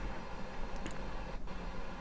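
Steady hiss of static from a software-defined radio's narrow-FM audio, tuned to the NOAA 18 weather-satellite downlink before the satellite's signal comes through: receiver noise only, no signal yet.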